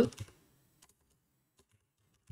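Faint typing on a computer keyboard: a few scattered key clicks, following the tail end of a spoken word.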